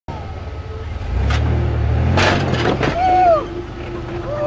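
Engine of a lifted SUV crawling over rocks, its pitch and loudness rising about a second in as the driver gives it throttle, with a harsh scraping burst around two seconds in as the tyres and chassis work over the rock. A short rising-and-falling vocal call follows near the end.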